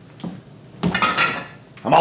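Clattering of small hard objects being handled, in a burst about a second in and a louder one near the end.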